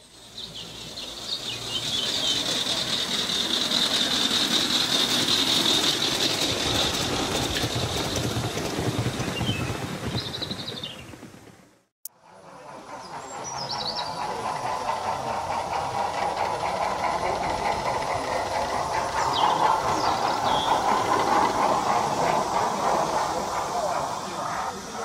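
Gauge 3 model train running along garden railway track, a steady rumbling rattle of wheels on rail. The sound drops out about halfway through and comes back.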